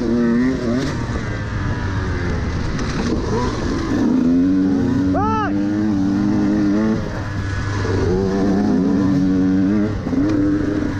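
Dirt bike engine running under throttle on a rough trail, its pitch rising and falling as the rider opens and closes the throttle through the turns. A short high squeal comes about five seconds in.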